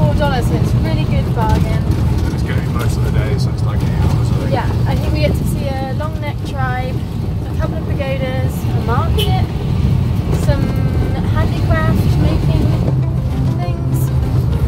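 Steady low rumble of a vehicle's engine and road noise, heard from inside the covered back of a small passenger vehicle, under two people talking.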